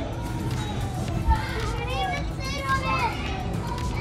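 Children's voices and high calls, the hubbub of kids at play, over background music with a steady low bass.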